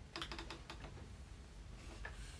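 Fingertips tapping on a tablet: a quick run of light clicks in the first second, then faint room tone.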